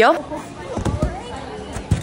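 A gymnast's running footfalls thudding on the padded floor, then a louder thump near the end as her feet strike the springboard for the take-off onto the beam.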